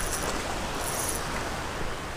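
Steady rushing noise of wind and choppy water moving around a wading angler, with a brief brighter hiss about a second in.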